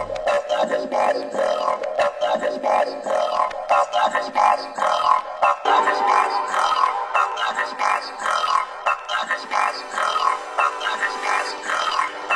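Breakbeat electronic music from a DJ mix: a busy, rhythmic track with the deep bass mostly dropped out. About halfway through, a new droning layer of sustained tones comes in under the beat.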